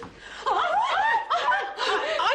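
Women's high-pitched shrieks and squeals, starting about half a second in, several short cries swooping up and down in pitch.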